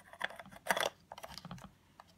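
Plastic body cap being turned on the bayonet lens mount of a Canon EOS 600D, a run of small clicks and scrapes, loudest a little under a second in.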